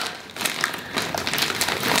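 Packaging crinkling and rustling as a delivered clothing parcel is opened by hand, in short irregular scratchy sounds.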